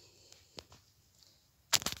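Handling noise from a handheld phone: a faint tap about half a second in, then a quick cluster of sharp knocks and rubs near the end as the phone is moved.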